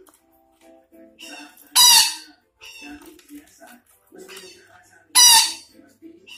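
Psittacula parakeet (Betet Sumatra) giving two loud, harsh screeches about three and a half seconds apart, with softer chattering calls in between.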